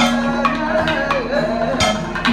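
Kathakali percussion accompaniment: chenda and maddalam drums struck in sharp, irregular strokes, with a held, wavering sung line underneath.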